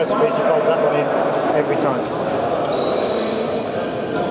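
Basketball game sounds in a large sports hall: a steady murmur of players' and spectators' voices, with several short, high sneaker squeaks on the court floor.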